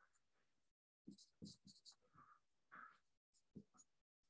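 Faint scratching of a stylus writing on a tablet: a run of short strokes starting about a second in, otherwise near silence.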